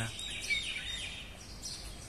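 Birds chirping with short, high calls over a steady outdoor background noise.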